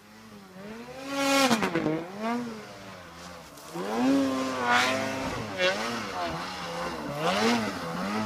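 Snowmobile engine revving up and down in repeated surges as the sled rides over snow bumps, the pitch rising and falling with each burst of throttle. It grows louder as it comes closer.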